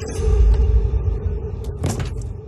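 Horror trailer sound design: a deep rumbling boom swells in under a steady held drone tone. A sharp hit lands near the end.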